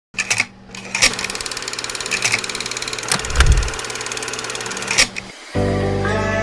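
Edited intro sound design: a fast, even mechanical ticking with sharp hits every second or so and a low boom about three and a half seconds in. It stops about five seconds in, and music with held tones starts just before the end.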